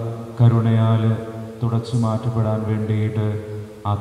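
A man's voice chanting a liturgical prayer on a nearly level reciting pitch, in three phrases with brief pauses between them.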